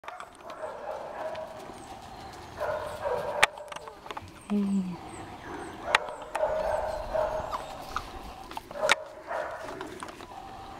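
Dogs whining and yapping, with three sharp clicks about three seconds apart.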